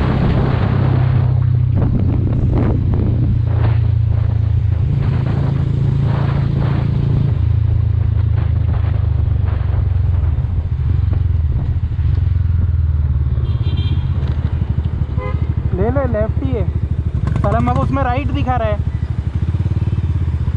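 Motorcycle engine running while riding, heard from the rider's seat with wind rushing over the microphone; its pitch shifts a few times with the throttle.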